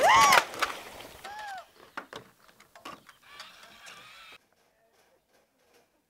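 A short exclaimed vocal sound at the start and a fainter one about a second and a half in, then faint scattered knocks, dropping to near silence for the last second and a half.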